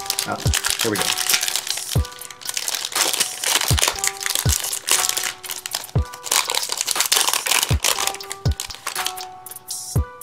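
Wrapper of a 2022 Topps Series 1 baseball card pack crinkling as it is torn open by hand and the cards are pulled out, over background music with a steady beat.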